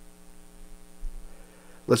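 Steady electrical mains hum on the recording, with a brief soft low bump about a second in; a man's voice begins speaking right at the end.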